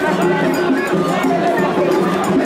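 Mikoshi-carrying crowd: many voices chanting together in a rhythmic call two or three times a second, with a scatter of small metallic clinks over the top.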